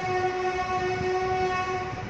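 A woman humming one steady, held note with her lips closed, for about two seconds. Her voice glides up into it straight from her speech.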